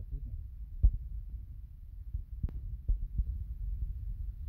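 Low steady hum with a few soft knocks, one about a second in and a couple more in the second half.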